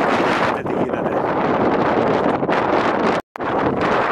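Strong mountain wind buffeting the camera microphone, a steady rumbling roar that drops out for an instant a little over three seconds in.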